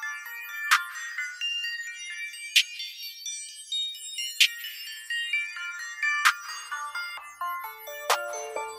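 Instrumental stretch of a hip-hop track without vocals or bass: high melodic notes over a sharp hit about every two seconds.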